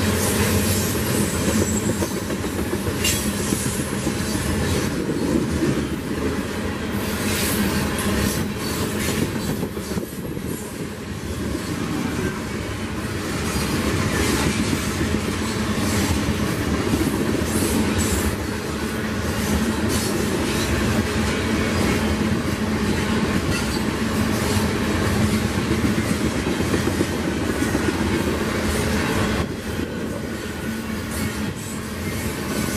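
Freight train of tank cars rolling past close by: a steady rumble of steel wheels on the rails, with a constant run of clicks and clacks from wheels crossing rail joints.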